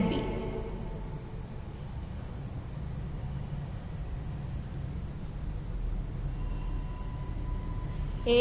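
A steady high-pitched background drone over a low rumble, with a faint thin tone joining in near the end.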